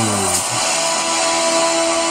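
Movie-trailer music: a low tone slides down in pitch and ends about half a second in, then a steady held chord.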